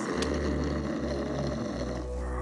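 A large cartoon bear snoring in deep sleep: a long, rough, rumbling snore that breaks off briefly near the end and then starts again.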